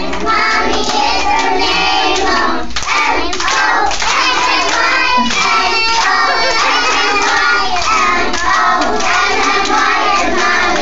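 A group of young children singing a song together in chorus while clapping their hands along with it.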